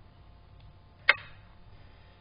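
A single sharp click about a second in, over a faint steady background hiss.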